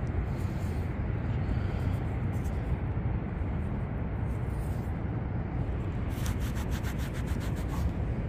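Muddy fingers rubbing soil off a small dug metal disc, with a quick run of rapid scratchy strokes about six seconds in, over a steady low rumble.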